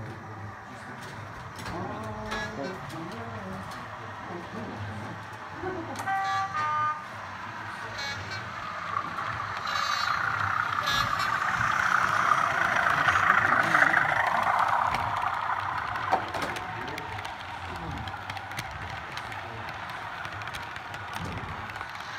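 A model diesel locomotive and its coaches running along the track, the rolling noise swelling as the train passes close by in the middle and fading after. A short horn-like tone sounds about six seconds in.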